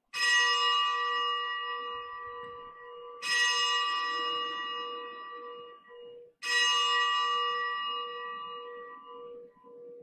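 A bell rung for the elevation of the chalice at Mass: struck three times, about three seconds apart, each stroke ringing and dying away slowly. A lower hum lingers beneath and pulses near the end.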